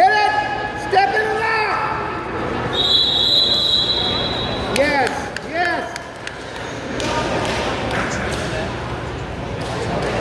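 Shouting from the sidelines of a wrestling match in a gym, with a referee's whistle blown once, about three seconds in, for about a second, stopping the action. More loud shouts follow about five seconds in.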